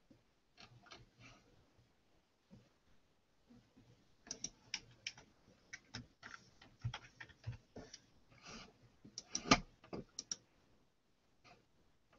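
Irregular clicking of computer keys and mouse buttons, a few scattered clicks at first, then a busier run of typing from about four seconds in, the sharpest click near the end of that run.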